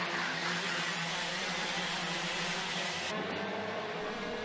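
A pack of IAME X30 125cc two-stroke racing kart engines running together at speed, a steady drone with several engine notes overlapping. About three seconds in the sound changes, the upper hiss dropping away and a lower hum coming in.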